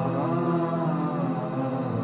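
Closing-credits music of layered voices holding long, slowly shifting chanted notes.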